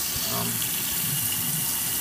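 Kitchen faucet running steadily into a sink.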